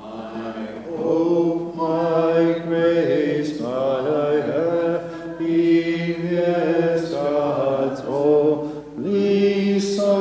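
Unaccompanied Maronite liturgical chant, sung in long sustained phrases with brief breaks between them.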